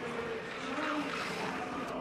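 Ski jumper's skis running down the inrun track at speed toward takeoff: an even rushing hiss that swells slightly about a second in.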